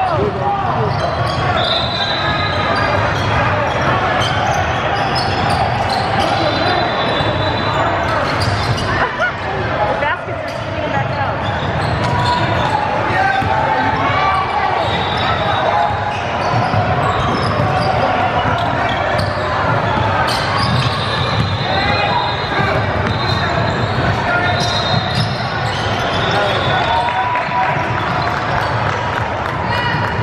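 Basketball game sounds on a hardwood gym court: the ball bouncing, short high sneaker squeaks several times, and indistinct voices of players and spectators throughout.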